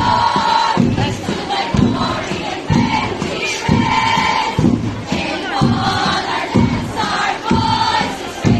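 Drum-cheer routine: drums strike a steady beat a little under once a second under a group of voices chanting and shouting, with crowd noise around them.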